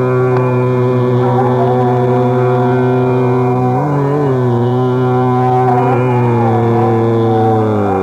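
Hindustani classical vocal music in Raag Megh: a male voice sustains one long low note with a full, steady tone, wavering briefly in pitch about halfway through, while fainter melodic lines move above it.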